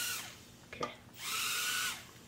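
Micro quadcopter drone's tiny motors and propellers whirring in two short bursts of about a second each, a high whine that cuts off in between.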